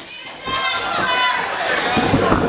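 Crowd shouting and cheering, with high children's voices among it, swelling up about half a second in.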